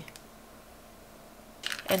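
Quiet room with faint handling of clear plastic blush compacts, ending in a short run of light plastic clicks as a compact is picked up and handled.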